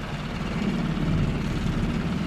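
Small 5 hp Tohatsu four-stroke outboard motor running steadily, pushing a small sailboat along: an even low drone.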